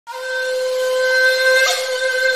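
One long, steady horn-like note with a hiss over it, the sound of a channel logo intro.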